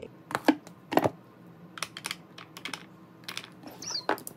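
Irregular light clicks and knocks of plastic makeup tubes and clear acrylic organizer drawers being handled, the loudest within the first second.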